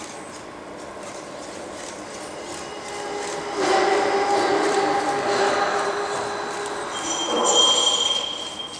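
Servo motors of a small humanoid soccer robot whining steadily as it is handled and set into its standing pose, growing much louder about three and a half seconds in. A high steady tone joins near the end.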